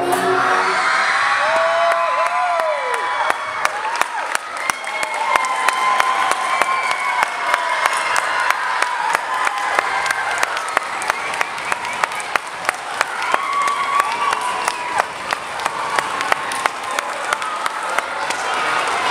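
Audience applauding, with dense clapping throughout and cheers and whoops that rise and fall over it, near the start and again later on.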